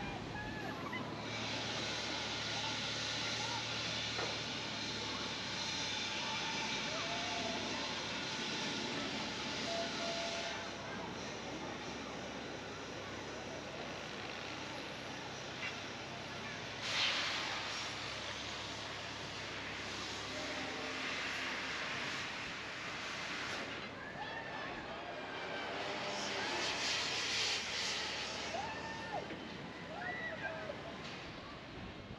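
Outdoor amusement-park ambience: distant voices over a hiss that swells and fades several times, with its loudest rush starting suddenly about 17 seconds in.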